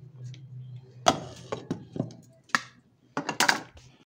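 Kitchen clatter: several sharp knocks and clinks of metal pots and a lid on a gas stove, over a low steady hum in the first second.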